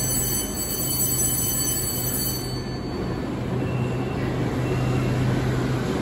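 Beijing Subway Line 5 train standing at the platform with a steady low hum, overlaid by thin high-pitched tones that stop about two and a half seconds in, while its doors and the platform screen doors close.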